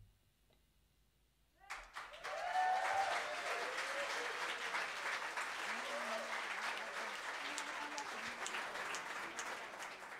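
Audience applause at the end of a live jazz song: about a second and a half of hush after the last note, then clapping starts suddenly and runs on strongly, with cheering voices mixed in.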